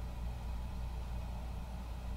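Faint steady low hum with a light hiss and no other events: background room tone.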